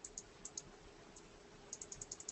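Faint typing on a computer keyboard: a few scattered key clicks, then a quick run of them near the end, over a faint steady hum.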